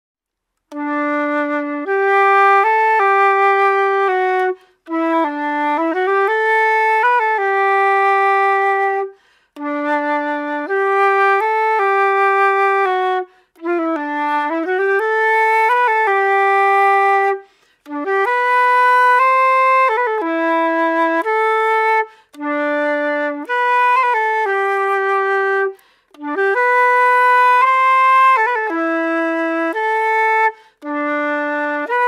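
Solo silver concert flute playing a slow waltz tune from the Estonian bagpipe repertoire, in phrases of about four seconds with a short breath between each. A couple of notes dip and slide back up into pitch.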